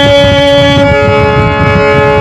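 A broken harmonium sustaining a chord of steady reed notes, one note dropping out and a new, higher one coming in about a second in, with a low rumbling noise underneath.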